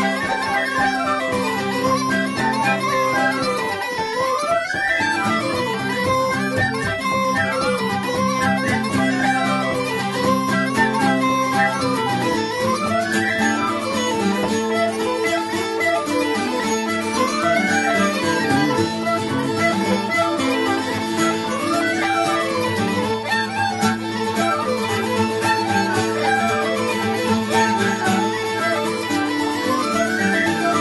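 An Irish traditional tune played in unison on several tin whistles with uilleann pipes, the pipes' drones holding a steady tone beneath the quick, ornamented melody.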